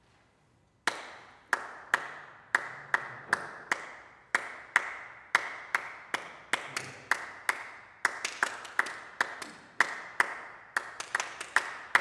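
Percussion from an unaccompanied vocal group: a run of sharp clicks in a steady, lopsided rhythm, starting about a second in and getting busier in the second half.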